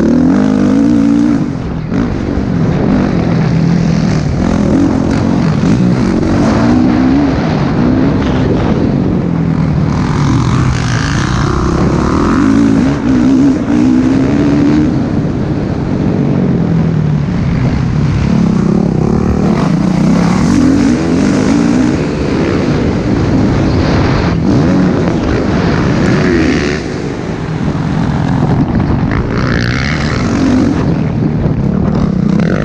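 Motocross bike engine revving hard while racing on a dirt track. Its pitch climbs repeatedly and drops back with each gear change and throttle chop.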